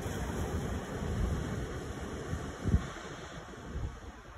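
Small sea waves washing and splashing against shoreline rocks, with wind rumbling on the microphone and one brief low thump about two and a half seconds in.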